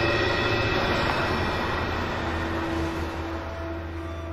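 Horror film score: a sustained low drone with a swelling rush of noise that peaks about a second in and then fades.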